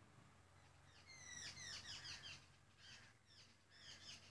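Faint bird calls: runs of quick, high chirps that sweep downward, starting about a second in and coming again twice before the end.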